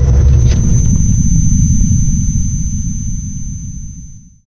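Deep rumbling boom of an outro logo sting, with thin steady high tones ringing above it, slowly fading out toward the end.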